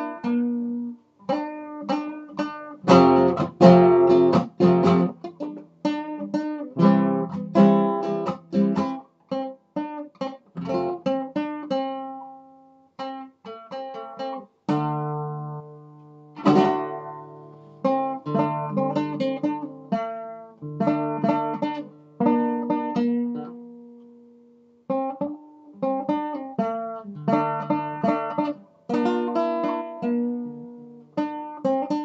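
Classical acoustic guitar played with the fingers, picked chords and melody notes. A few times the notes are left to ring and die away before the playing picks up again.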